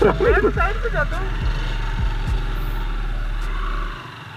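Steady low rumble of a Yamaha YBR-G's small single-cylinder engine running, with a man's voice over it for about the first second; the rumble cuts off suddenly near the end.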